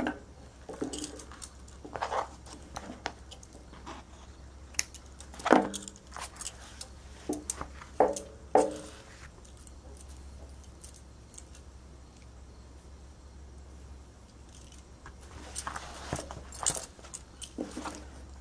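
Stacked glass and metal bangles clinking on the wrists as the hands work fabric and handle a pair of scissors: scattered light clicks and jingles, with a few louder ones near the middle, over a steady low hum.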